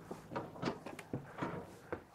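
Footsteps climbing the entry steps of a motorhome and onto its floor: a quick series of light knocks, about three or four a second.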